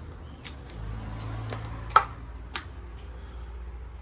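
A handful of short, sharp clicks and taps, the loudest about two seconds in, over a low hum that swells for about a second near the middle.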